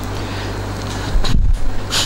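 Steady low hum and hiss of room noise picked up through the lectern microphone, with a short low thump on the microphone about a second in and a brief click just before the end.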